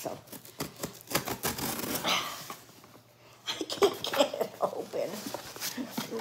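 Cardboard shipping box being handled and pried at, its glued flaps scraping and clicking in short irregular bursts, with a quieter pause about halfway through.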